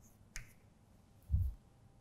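Chalk tapping sharply once against a blackboard while writing, about a third of a second in. A dull low thump follows about a second later.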